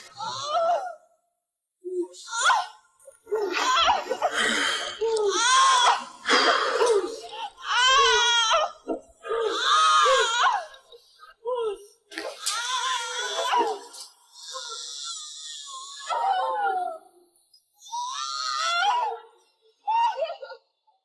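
A woman screaming and wailing in labour pains, in a series of long cries, some with a shaking pitch, broken by short pauses.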